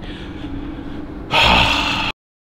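A steady low hum, then about a second and a third in, a man's loud, breathy exhale lasting under a second.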